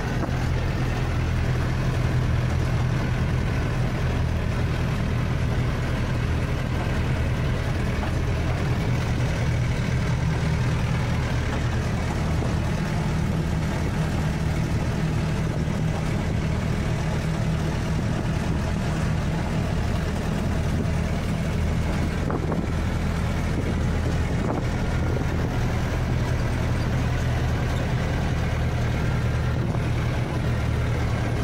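Ashok Leyland Ecomet truck's diesel engine running steadily while hauling a 16-tonne load, heard from inside the cab, with road noise over it.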